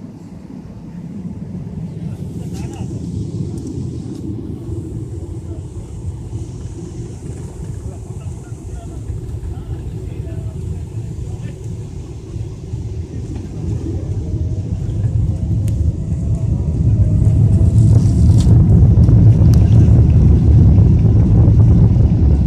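Cabin noise of a Boeing 777-300ER's two GE90 turbofans, heard through the fuselage: a steady low rumble while taxiing, then a rising whine and a much louder, steady roar building over a few seconds about two-thirds of the way through as the engines spool up to takeoff thrust.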